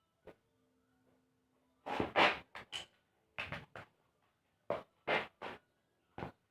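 Homemade spinning tops clashing in a paper floor arena: a string of sharp clacks and knocks in short clusters, the loudest about two seconds in.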